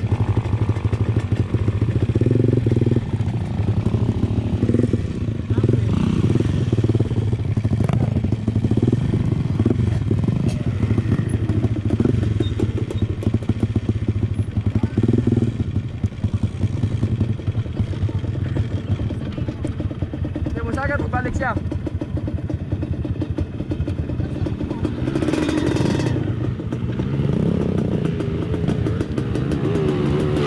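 Dirt bike engines idling steadily at a standstill, with a rising rev near the end as a bike pulls off. People talk over the engines.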